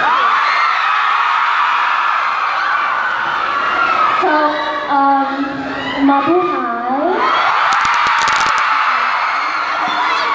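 A crowd of fans screaming and cheering in a loud, high-pitched wall of voices. About four seconds in it gives way to a few seconds of a woman talking through a microphone and PA, then the screaming rises again.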